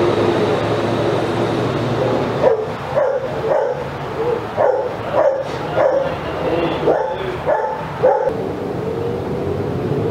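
A dog barking, a run of about ten short barks at roughly two a second, over a steady low hum.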